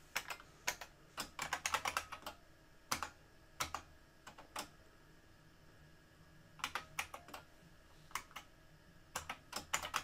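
Typing on a computer keyboard in uneven bursts of keystrokes: a quick flurry at the start, a few single taps, a pause about halfway, then a fast run of keys near the end.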